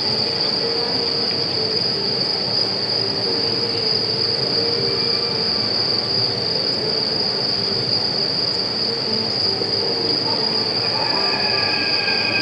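A steady high-pitched whine held without a break over a constant hiss, with a fainter low hum beneath; about a second before the end a second, lower whistling tone joins in.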